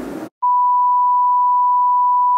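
A steady, single-pitched test-tone beep of the kind played with a 'Please Stand By' colour-bar test card, starting about half a second in after the room sound cuts out.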